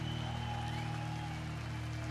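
A live punk band's electric guitars and bass ringing out on a sustained low chord through stage amplifiers, holding steady.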